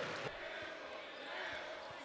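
Basketball being dribbled on a hardwood court, a few faint bounces, under the murmur of an arena crowd.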